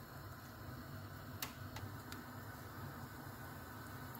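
A metal spoon clicking lightly against a pan a few times near the middle, as crushed garlic paste goes into simmering soup, over a faint steady low hum.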